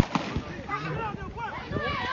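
A starter's pistol fires once, a single sharp crack that signals the start of a race. Voices start shouting right after.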